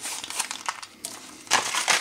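Crinkling of a spice packet being handled as allspice peppercorns are shaken out of it, with a louder burst of crinkling near the end.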